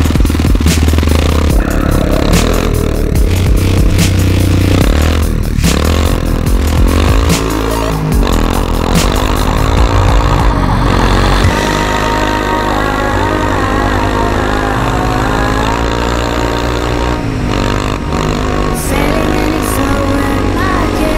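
Electronic music with a heavy bass beat, and a quad bike's engine revving up and down about halfway through, then running on under the music.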